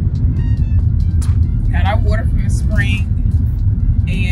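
Steady low rumble of road and engine noise inside a moving minivan's cabin, with brief voices about two and three seconds in.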